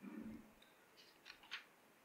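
Near silence with a soft low thud at the start, then three short, crisp clicks about a second in.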